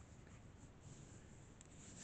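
Near silence with faint rustling and light ticks of tarot cards being slid on a cloth-covered table and the deck being picked up.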